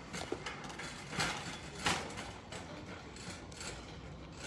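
Metal shopping cart rattling and clicking as it is pushed along a hard store floor, with two louder rattles near the middle.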